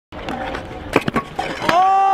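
Stunt scooter wheels rolling on a concrete skatepark bowl, then several sharp knocks as the rider falls and the scooter clatters onto the concrete. A long, held high-pitched tone starts near the end.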